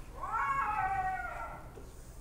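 A cat's single long meow, rising and then falling in pitch, played back from a video clip.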